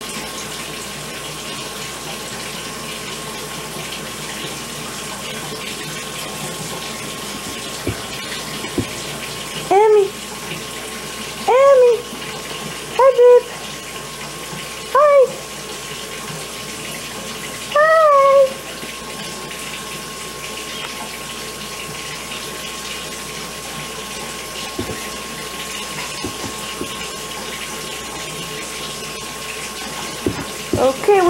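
Bath water running steadily from a tap into a tub. Between about ten and eighteen seconds in, five short rising-and-falling baby vocalisations sound over it.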